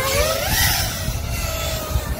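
Whine of a 5-inch FPV racing quadcopter's brushless motors (DYS Sun-Fun 2306-1750kV on 6S, spinning HQ 5.1-inch props) in flight. The pitch swings with throttle: it dips, climbs to a peak about half a second in, then settles to a steadier tone.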